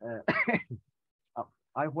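A person clearing their throat with a short cough, then speech starts near the end.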